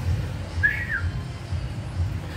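Background music with a steady bass beat, about two beats a second, and a single short rising-then-falling whistle about half a second in.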